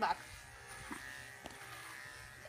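Electric dog clippers buzzing steadily as they run through a terrier's curly coat, with a few faint ticks.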